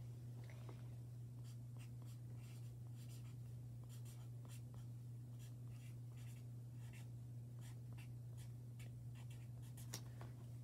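Faint scratching of drawing on paper in short, irregular strokes, over a steady low hum.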